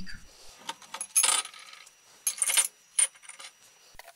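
Chunks of chromium metal dropped into an empty glass beaker, clinking and rattling against the glass in three short bursts.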